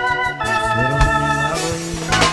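Live worship music: a keyboard with an organ sound holds sustained chords, moving to a new chord about half a second in.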